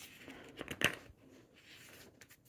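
A page of a large picture book being turned by hand: a short paper rustle with a few soft flicks in the first second.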